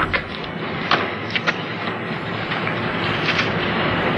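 Steady background rumble of outdoor noise, with a few light clicks about a second in, around a second and a half in, and again past three seconds.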